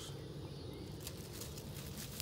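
Quiet outdoor garden ambience: a steady low rumble with faint hiss and one light click about a second in.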